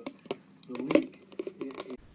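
A dog licking the inside of a clear plastic jar: wet tongue slurps with sharp plastic clicks and crinkles from the jar. A person's voice is heard briefly around the middle and again near the end.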